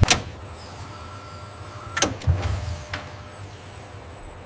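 Industrial robot arm's motors whirring as it moves, with a sharp click at the start and another about two seconds in, the second followed by a low thud.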